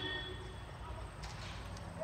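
A low steady background hum from the outdoor night ambience of a drama scene, with a faint high thin tone during the first half-second and a few soft clicks.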